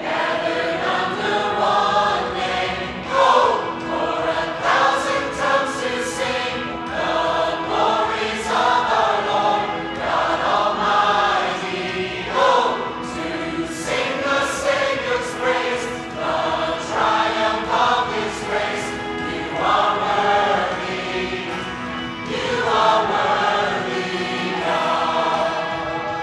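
Large mixed choir of men and women singing a worship song together, coming in strongly at the start and singing in phrases with short breaks between them.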